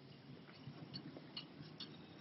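Faint, irregular light clicks and ticks, a few a second, over a low hum.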